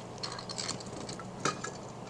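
Light metallic clinks and taps of an aluminium Edelbrock carburetor being handled as its top is set onto the body over a fresh gasket, with one sharper click about one and a half seconds in.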